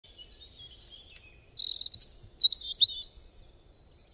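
Birdsong: a run of high chirps, whistles and rapid trills, loudest in the middle and fading away in the last second.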